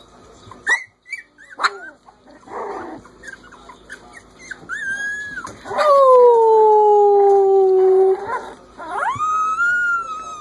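Three-week-old Corgi puppies howling. Short squeaky yips come first; about six seconds in, the loudest call is a long howl that falls slowly in pitch for about two seconds. A higher howl rises and then holds near the end.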